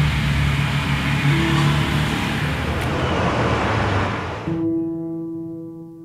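Car noise, a steady engine and road hiss, fading out about four and a half seconds in. A held, steady music chord follows.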